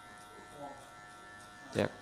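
Electric hair clipper fitted with a number 2 guard, running with a faint steady buzz as it is pushed up through short hair on the back of the head.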